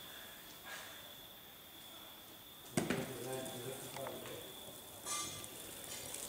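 A bocce ball played down the court, with one sharp knock about three seconds in as the ball strikes. A faint, steady, high insect chirr runs underneath, and faint voices follow the knock.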